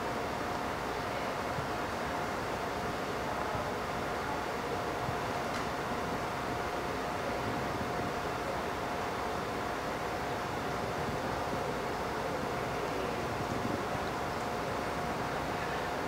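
Steady background room noise with a constant mid-pitched hum running through it.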